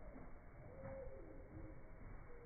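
Zwartbles ewes bleating, slowed down by slow-motion playback into faint, low, drawn-out calls that sound like they're underwater, like whale song. About a second in one call holds a steady pitch and another slides downward.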